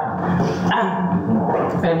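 A person's voice, indistinct and without clear words.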